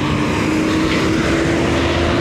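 Street traffic noise from a city bus close by: a steady engine hum with one tone that climbs slightly, as if the bus is moving off.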